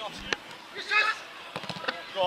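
A football being kicked on a grass pitch, a sharp knock about a third of a second in, with a brief shout around a second in and a quick cluster of knocks near the end.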